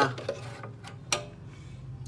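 Thin steel cover plate being lifted off the tone-control section of a Marantz 1150 MkII amplifier: a few light metallic ticks and one sharp click about a second in.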